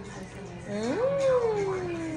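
A closed-mouth 'mmm' of enjoyment while eating pizza: starting about two-thirds of a second in, a hummed voice swoops up in pitch, then slides slowly back down in one long sound.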